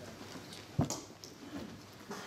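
A single short, sudden thump about a second in, with only faint room sound around it.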